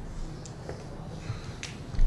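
Steady low room hum with a few light, sharp clicks spread through the pause, and a low thump right at the end.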